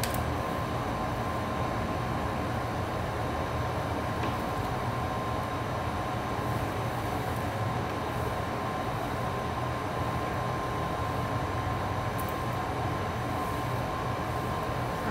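Steady droning machine hum with a thin, constant high tone, unchanging throughout.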